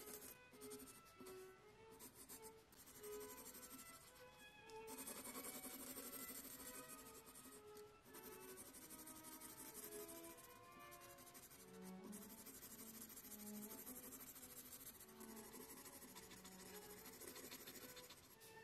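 Graphite of a mechanical pencil scratching across sketch paper in shading strokes, broken by a few short pauses, under quiet background music with a slow melody of single notes.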